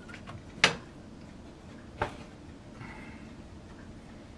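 Hard plastic model parts clicking and knocking as a plastic superstructure section is lifted off a model battleship's hull: a sharp click about half a second in, a smaller one about two seconds in, and a few faint ticks.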